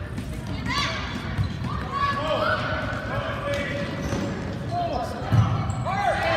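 Sneakers squeaking in short chirps on a gym floor during an indoor youth soccer game, mixed with children's shouts echoing in the hall, and a dull thud about five seconds in.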